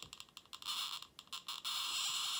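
Static hiss from a Trifield TF2 EMF meter's audio output in RF mode, breaking up into choppy bursts with short gaps. The hiss follows the radio signal from the iPhone beside it, which is falling as the phone is switched from cellular to Wi-Fi only.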